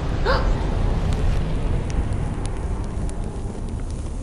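Rumbling noise of a movie-effect explosion dying down, with one short rising yelp about a third of a second in and a few faint clicks.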